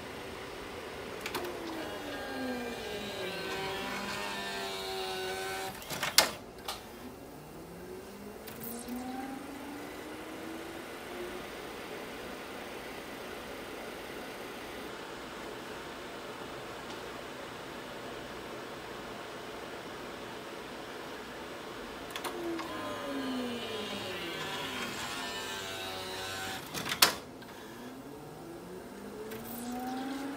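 Sony MDP-800 LaserDisc player running with its cover off: a motor whine falls in pitch as the disc spins down, the mechanism clunks sharply about six seconds in, and the whine rises again as the disc spins back up. The same fall, clunk and rise comes again from about 22 seconds in, with the clunk near the end.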